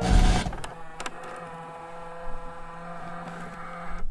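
A loud burst of static noise for about half a second as the music cuts off, then a steady electrical hum with a few faint clicks.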